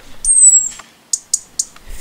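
A European robin's single thin, high-pitched call, held about half a second and falling slightly, followed about a second in by three short high chirps.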